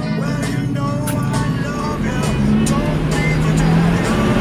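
Race car engine idling and revving on the starting grid, heard from inside the cabin, with music playing over it; the engine note steps up about two seconds in.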